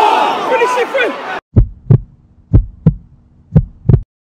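Football crowd noise with shouting, cut off abruptly about a second and a half in. Then a heartbeat sound effect follows: three double thumps, about one per second.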